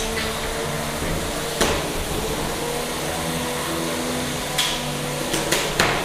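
Spinning drum weapons of two 3 lb combat robots whining steadily, broken by sharp weapon hits: one about a second and a half in and several close together near the end as one robot is thrown into the air.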